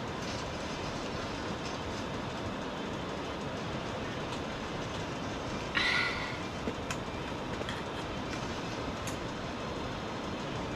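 A steady, even rushing noise, with one short, sharper sound a little before six seconds in and a few faint clicks after it.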